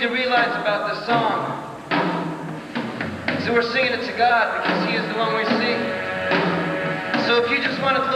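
Live song performance: a male voice singing a simple chorus melody into a microphone over sustained instrumental backing.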